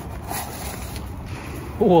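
Metal bucket of a ride-on toy sand digger scraping and scooping through gravel, a low rough grating. Near the end a voice exclaims "ui giời".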